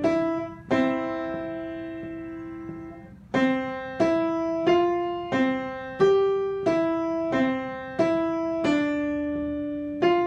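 Piano played one note at a time by the right hand, stepping among C, D, E, F and G around middle C in a slow, even beat. One note is held for about two seconds early on, and another is held longer near the end.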